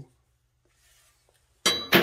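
Near silence for over a second, then a sharp metallic clank near the end as a big soldering iron is set back down among hammers and pry bars in a steel drawer.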